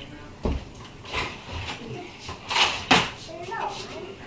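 Kitchen handling noises around a glass mason jar and cooktop: a dull thump about half a second in, then rustling and a sharp click near three seconds.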